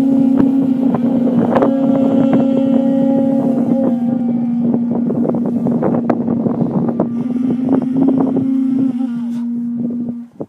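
Several conch shell trumpets (pū) blown together in one long, steady, held note. One drops out near the end, leaving a single slightly lower tone.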